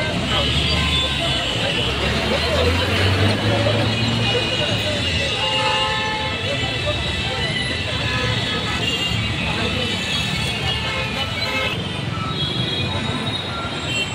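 Crowd voices over road traffic: vehicle engines running, with a low rumble in the first half, and horns tooting now and then.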